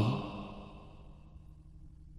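A pause in a man's speech: a breath out fading away just after his last word, then a faint steady low hum of background noise.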